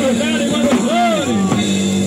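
Punk rock band playing live through a PA, with drums and guitar on a steady held chord.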